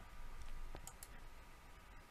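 A few faint, short clicks in a quiet pause, over a faint steady background hiss with a thin steady whine.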